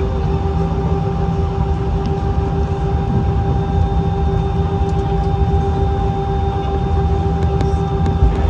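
Airbus A319 cabin noise while taxiing: a steady low rumble from the engines at taxi power, with a constant held hum-like tone over it.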